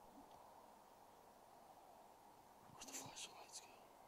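Near silence with a steady faint hiss, broken about three seconds in by a brief whisper or breath from a person close by.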